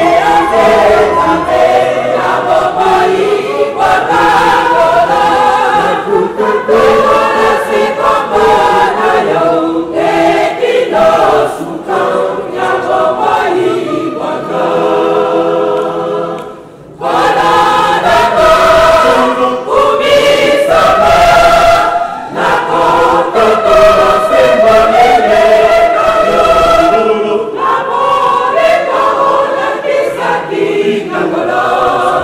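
A church choir of women's voices singing together, loud and sustained, with one short lull a little past halfway.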